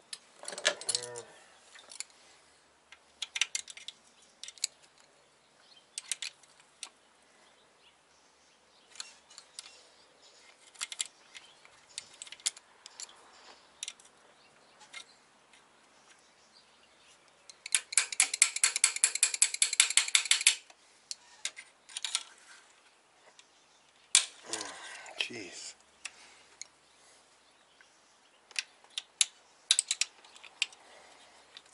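Ratchet wrench clicking in short runs as small engine bolts are worked loose, with one long, fast run of clicks about two-thirds of the way through. Two brief sounds slide down in pitch, one near the start and one about three-quarters of the way through.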